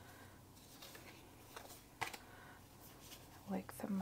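Paper cards and postcards being handled and shuffled: a soft rustle with a few light clicks, the sharpest about two seconds in.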